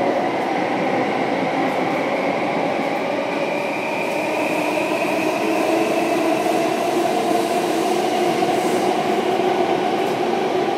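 SMRT C830 Circle Line metro train running through a tunnel, heard from inside the carriage: a steady rumble of running noise with a traction-motor whine that climbs slowly in pitch as the train gains speed.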